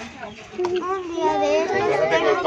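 Children's voices, high-pitched talk and calls, getting louder after the first half-second.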